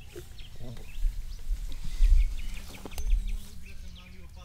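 Young men laughing and chuckling, broken voice sounds with no clear words, over a few loud low thumps from a couple of seconds in.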